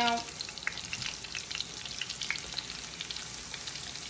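Turkey wings frying in a cast iron skillet of cooking oil and bacon grease: a steady sizzle with scattered crackling pops.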